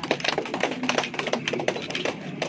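A rapid, irregular patter of sharp clicks and taps, several a second.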